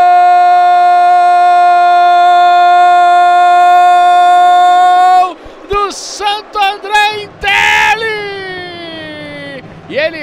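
Sportscaster's long, held "Gooool!" goal call on one steady note for about five seconds, then breaking into shorter excited shouts.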